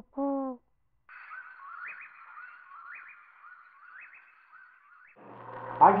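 A short, low hoot-like animal call right at the start, then a faint raspy chorus with a rising chirp about once a second. A low steady hum comes in near the end.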